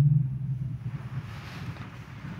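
A pause in a man's amplified speech: his last word fades out in a reverberant room about a quarter second in, leaving a low, steady background rumble and hiss.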